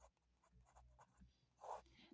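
Faint scratching of a ballpoint pen writing a word on paper in a few short strokes, with a longer, slightly louder stroke near the end as the word is underlined.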